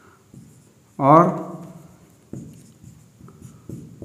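Marker pen writing on a whiteboard: a series of short strokes scraping across the board, with faint squeaks.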